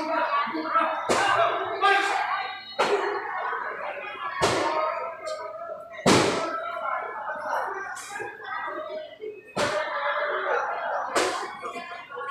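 Sharp slaps and thuds at a kickboxing ring, about eight in all at intervals of one to two seconds, the loudest about six seconds in, over people shouting and talking in an echoing hall.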